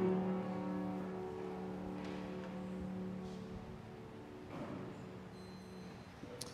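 Grand piano's closing chord struck and left to ring, dying away over three or four seconds as the prelude ends.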